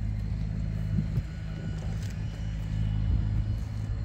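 A steady low hum of a running engine or motor, with a few faint clicks over it.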